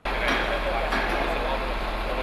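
Loud, steady machinery noise with a constant low hum starts suddenly, with people's voices talking over it.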